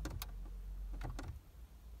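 Small plastic clicks of the button beside a VW Passat B6 instrument cluster being pressed twice, a pair of clicks at each press, about a second apart.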